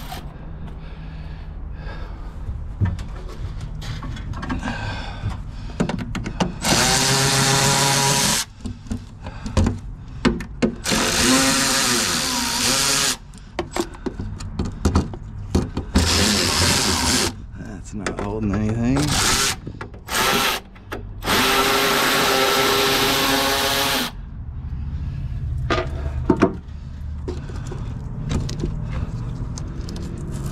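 Cordless ratchet running in about six bursts of one to three seconds each, with a motor whine that rises in pitch during one burst, as it spins screws and bolts out of interior panels. Quieter clicks and handling noise of parts and tools fall between the bursts.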